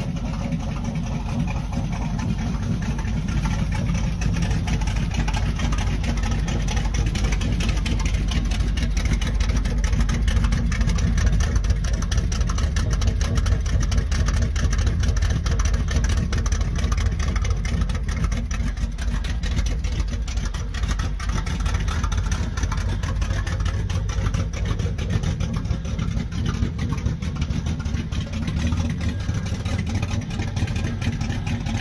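Rat rod pickup's engine running at a steady idle, with a rapid, even pulsing from its exhaust.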